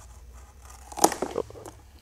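A knife slicing through a nylon tie-down strap: faint cutting and rasping, with a few brief louder strokes about a second in, over a steady low hum.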